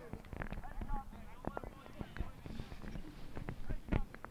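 Faint, distant voices on an open rugby field, with scattered light clicks and knocks close to the microphone and one sharper knock near the end.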